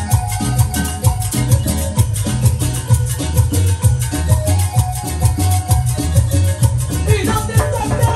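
Live Latin dance band playing, with electric keyboard, conga drums and bass over a steady, driving beat, and a falling, gliding line near the end.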